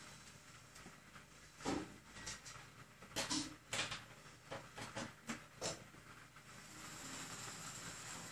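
Faint scattered clicks and knocks of a USB cable being plugged into a PC and an Android TV stick being handled. A faint high whine comes in near the end.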